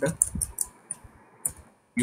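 Computer keyboard keys clicking a few times, faint, as a word is typed.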